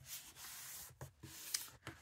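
Faint rustling of a sheet of scrapbook paper being handled and smoothed against a cutting mat, with a few soft ticks about a second in and near the end.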